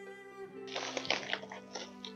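Plastic crinkling and rustling of a black poly bubble mailer being handled, in short crackly strokes starting a little under a second in, over steady background music.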